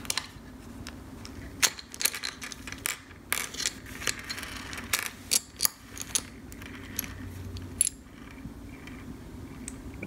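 Irregular small clicks and taps of carburetor parts being handled and pulled apart on a stone countertop: the diaphragm cover, gasket and diaphragm plates separating, with small steel screws clicking against the stone.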